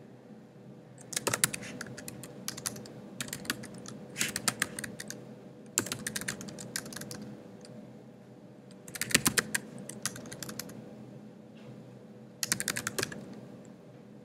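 Typing on a computer keyboard: quick runs of key clicks in about six short bursts separated by pauses, over a faint steady hum.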